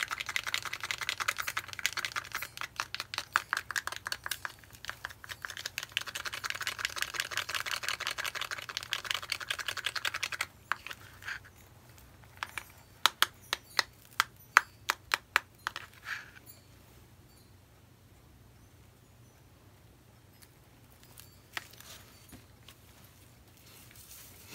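Small bottle of black cell activator shaken with a dense, rapid rattle of ticks for about ten seconds. A couple of seconds later come about ten sharp separate clicks, the bottle's pump sprayer being worked as the activator goes onto the wet paint.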